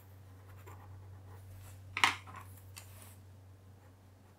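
Pen scratching faintly on paper while a small circle is drawn, with one short click about two seconds in, over a low steady hum.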